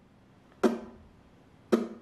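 Alvarez Regent tenor ukulele: two single down-strums of bar chords, about a second apart, each ringing out and fading before the next.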